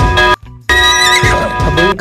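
An edited-in sound clip with music: a chord of steady tones with a brief wavering sound on top, played twice in a row in the same shape, with a short break about a third of a second in.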